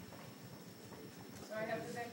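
Classroom room noise with a few soft knocks. About one and a half seconds in, a person's voice starts, fainter than the teacher's lecturing, like an answer from the room.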